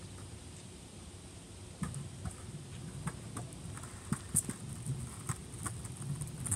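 Skateboard rolling closer on a paved street, starting about two seconds in: its wheels rumble, with scattered sharp clacks that grow louder as it nears.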